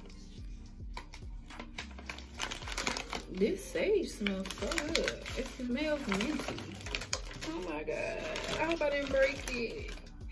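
Paper packing wrap crinkling and rustling as it is pulled open and handled. A voice-like melody runs over it from about three seconds in to near the end.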